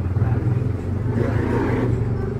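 Low, steady motor rumble that grows louder about a second in.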